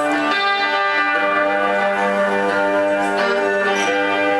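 Fender Telecaster electric guitar played through an amplifier in a slow instrumental piece, with picked chord notes that ring on and overlap, some held for a second or more.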